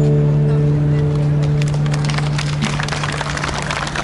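An acoustic guitar's last chord rings out and slowly fades. From about a second and a half in, an audience starts applauding.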